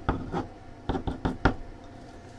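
A handful of light, irregular clicks and knocks over the first second and a half, from small objects being handled, then a quiet steady background.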